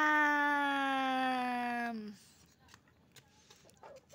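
A woman's voice holding one long, sing-song drawn-out vowel for about two seconds, its pitch sinking slightly, like a stretched-out 'nyaaam' or 'mmm'. The rest is quiet apart from a few faint clicks.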